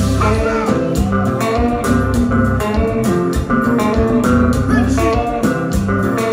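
Live kompa band playing a passage with no vocals: electric guitar over bass guitar and drums, with a steady beat.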